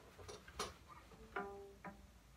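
Faint handling of a cello and bow being set in playing position: a light click, then a brief, faint ring from a cello string about one and a half seconds in, and a small tap near the end.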